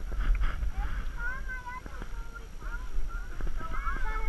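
Climbing a wooden ladder: a few scattered knocks of shoes and hands on the rungs over a low handling rumble on the microphone, with faint voices of people nearby.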